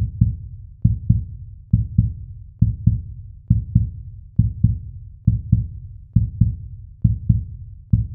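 Heartbeat sound effect: paired low thumps, a lub-dub, repeating steadily a little faster than once a second.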